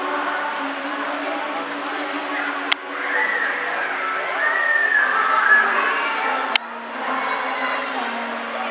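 A children's choir singing together, with two sharp clicks about three seconds in and again about six and a half seconds in, each followed by a brief drop in the sound.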